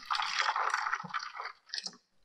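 Water pouring from a kettle into a metal baking tray around a foil-wrapped cake pan, filling a water bath. The pour tapers off about one and a half seconds in, ending with a few last splashes and drips.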